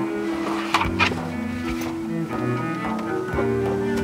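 Background music with sustained bowed-string tones, moving in slow steps of pitch, with two brief hissing clicks about a second in.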